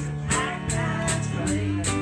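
Live band playing a song: drum kit keeping a steady cymbal beat under electric keyboards, with a woman singing.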